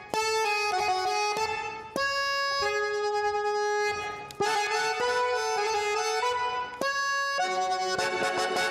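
Hohner button accordion playing a slow tango melody line: held reedy notes in short phrases, with brief breaks between them.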